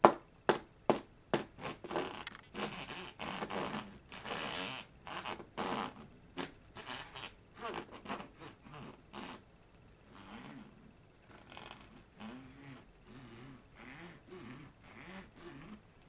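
Chunky clog heels with buckled straps handled close to the microphone: a quick run of sharp taps and knocks with scratching over the first half, then softer rubbing with low, wavering creaks in the second half.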